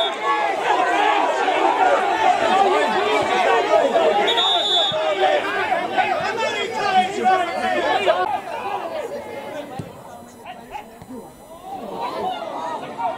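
Many overlapping voices of spectators chattering and calling out close to the microphone, none of it clear speech. It is loud for about eight seconds, then drops off and goes quieter.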